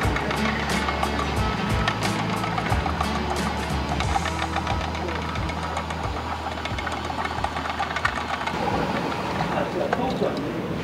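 An electric line-winding machine runs steadily, its small belt-driven motor spinning a spinning-reel spool as it winds on fresh nylon fishing line. Background music plays over it.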